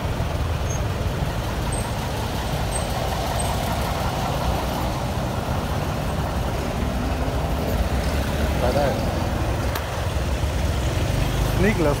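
Motorcycle engine running steadily at low speed while filtering through dense traffic, with the rumble of the surrounding buses and cars around it.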